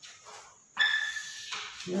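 Chalk drawn down a chalkboard in one long stroke, giving a steady high-pitched squeak for under a second, starting about halfway in.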